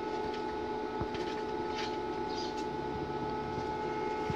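Steady machine hum made of several held tones over a faint hiss, with a couple of faint clicks about a second in.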